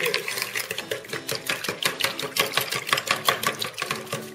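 Egg mixture being beaten by hand in a plastic bowl: a utensil strikes the bowl in rapid clicking strokes, several a second.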